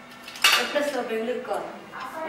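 Metal kitchen utensils clattering, with a sharp clink about half a second in.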